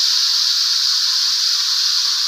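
Ground chilli, shallot and garlic paste sizzling steadily in hot oil in a wok, the paste now cooked through.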